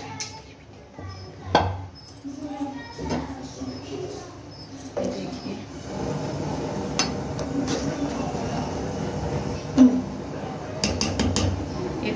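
Metal spatula clinking and scraping against a cooking pot as rice is stirred into boiling chicken stock, with a few sharp knocks, the loudest near the end. From about halfway through, the stock bubbles steadily at the boil.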